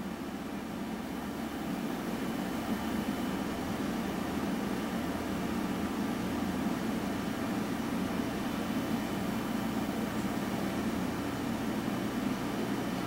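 Steady low hum of a fan running, even throughout with no clicks or changes.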